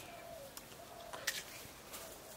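A bird cooing faintly in short low calls, with a few light clicks.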